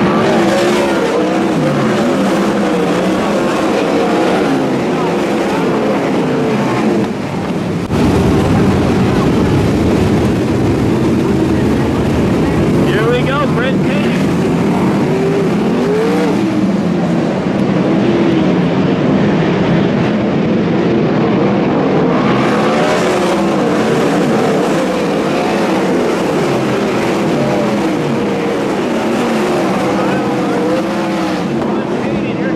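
A pack of 410 sprint cars' V8 engines racing on a dirt oval, several engines overlapping, their pitch rising and falling continuously as the cars accelerate, lift and pass.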